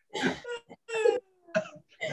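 Several short bursts of non-word vocal sound from people on a video call, with gaps between them and one falling in pitch near the middle.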